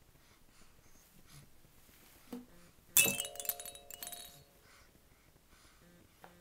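A sudden clinking clatter about three seconds in, with several ringing tones that die away within about a second.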